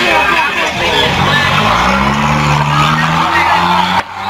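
A car engine revving up from about a second in and holding at high revs, with people's voices over it.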